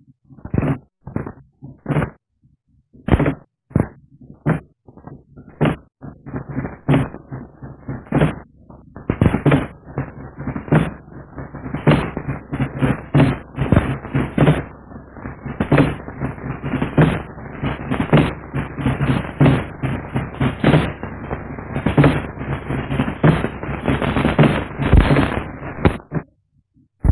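Drums being beaten: a few separate strokes at first, then from about eight seconds in a fast, dense, continuous run of beats.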